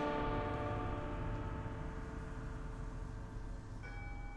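The long ringing decay of a loud struck chord on metal percussion: many bell-like tones fading slowly together. Near the end a soft new held note enters.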